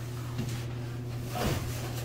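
A steady low hum, with a brief soft scuff about a second and a half in.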